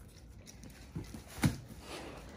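A Great Dane working at a cardboard shipping box with its paw and mouth: soft scuffing of cardboard with a couple of dull knocks, the sharpest about one and a half seconds in.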